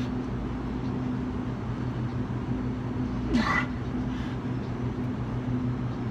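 A short groan of effort with falling pitch from a man pushing through a push-up, about three and a half seconds in, over a steady low hum.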